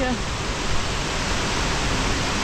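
Steady rushing of a mountain waterfall in a snowy gorge, an even wash of falling water.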